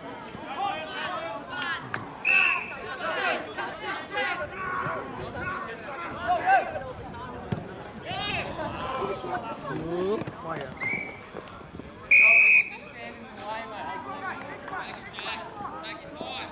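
Three short, steady whistle blasts, about two, eleven and twelve seconds in, the last the loudest, from an umpire's whistle at an Australian rules football match, over voices calling out around the ground.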